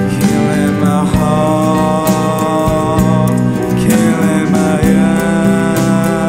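Alternative rock song in an instrumental passage: full band music with a steady beat.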